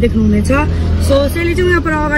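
A woman talking inside a car, over the car's steady low rumble.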